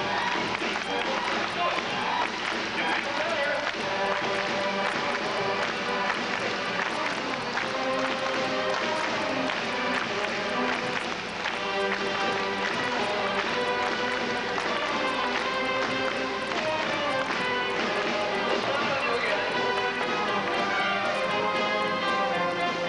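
School concert band playing, a dense mix of held notes with percussion strokes running through.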